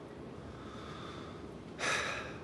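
Quiet room tone, then near the end a man's short, sharp breath, a sniff or gasp of air.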